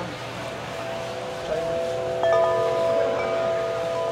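Large tubular wind chime set ringing by hand. Several long, overlapping tones sound together, with new notes joining about a second and a half and two seconds in, each ringing on.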